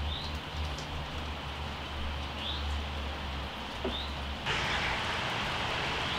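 Steady rain falling, with a few short, high bird chirps scattered through it and a low hum under the first part. About two-thirds of the way through, the rain hiss steps up louder.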